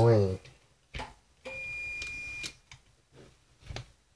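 A short voiced grunt trails off at the start, then a hand-held manual can opener clicks sharply a few times as it is worked on a dough can. About halfway through, a steady high-pitched tone lasts about a second.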